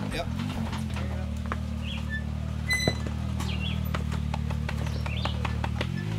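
Side-by-side UTV engine running steadily at low revs as the machine crawls over rock ledges, with a few light knocks and birds chirping now and then.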